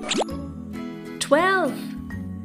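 Light children's background music, with a quick sliding 'plop' sound effect at the start. About a second and a half in, a high, sing-song voice calls out the number 'twelve' in one drawn-out, rising-then-falling word.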